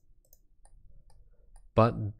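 A few faint computer mouse clicks in near quiet, then a man's voice begins near the end.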